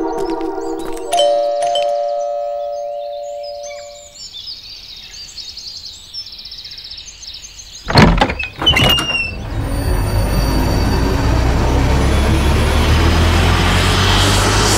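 A two-tone doorbell chime rings about a second in and fades over the next few seconds. Faint chirps follow, then a loud sudden stinger hit near the middle and a swelling, rumbling horror film score.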